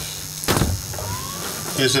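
A single sharp knock about half a second in, over a low steady hum, then a man's voice starts near the end.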